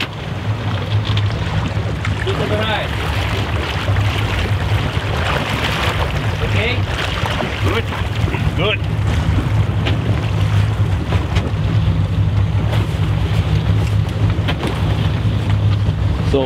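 Fishing boat's engine running steadily under way, a constant low drone, with water rushing past the hull and wind buffeting the microphone.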